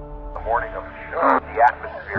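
Speech with a thin, muffled sound like an old recording, in short phrases over steady background music.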